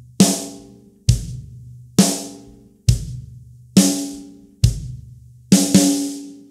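A Gretsch drum kit's kick drum and snare drum played alternately at a slow, even pace: a kick, then a snare crack, about every second. Near the end the two land almost together and the snare rings out.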